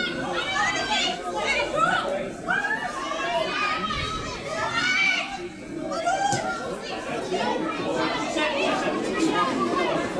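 Several women's voices shouting and calling over one another across the pitch during play, none of it clear enough to make out as words.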